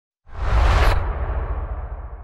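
Logo-reveal sound effect: a swelling whoosh that cuts off sharply just under a second in, over a deep rumble that slowly fades away.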